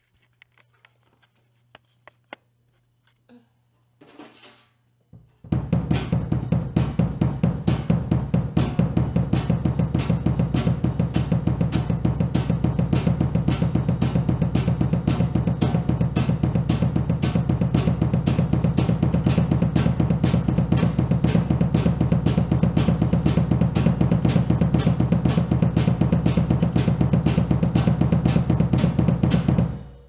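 Bass drum played with a double pedal in a fast, continuous, even stream of kick strokes, with sticks playing on the rest of the drum kit over it. It starts about five seconds in, after a few faint clicks, and stops suddenly at the end.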